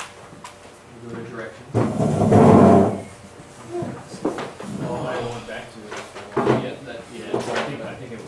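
Indistinct conversation among several people in a room, with a louder stretch about two seconds in and a few knocks.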